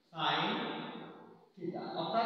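A man's voice speaking in two short phrases, the first trailing off before the second begins.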